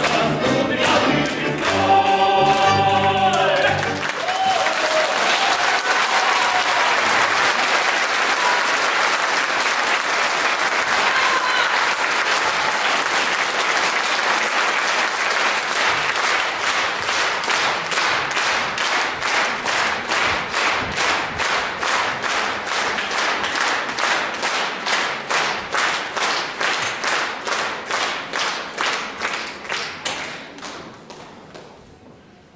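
A male vocal group with a small folk ensemble ends a song on a held chord that stops about four seconds in. An audience's applause follows. After ten seconds or so the applause settles into rhythmic clapping in unison, which fades toward the end.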